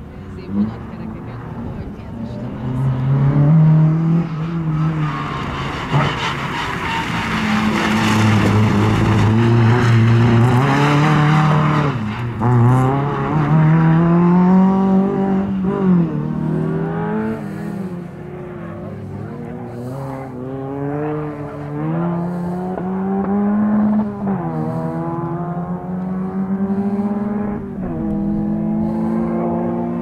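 Skoda Favorit rally car's four-cylinder engine revving hard as it is driven through the gears, its pitch climbing and then dropping sharply at each gear change, several times. For several seconds in the first half a loud rushing noise of tyres squealing and skidding sits over the engine.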